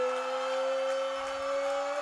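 A man's voice holding one long, drawn-out vowel, rising slightly in pitch: the ring announcer stretching out the winner's first name, 'Zaaach', in the style of a fight-result announcement.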